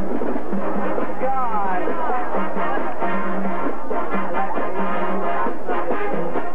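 High school marching band playing: brass over drums, with short repeated low brass notes. A wavering, bending high line sounds between about one and two seconds in.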